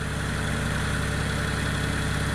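Mitsubishi eK Sport's three-cylinder engine idling with the air conditioning on, while the radiator's electric fan runs hard; a steady, even hum with a rush of air over it.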